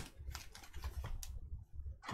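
Faint, irregular light clicks and taps of a stack of trading cards and foil card packs being handled and set down on a tabletop.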